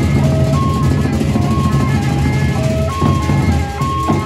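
Sasak gendang beleq ensemble playing: large double-headed drums beat a dense low rhythm under a melody of short, high held notes, with a cymbal crash about three seconds in.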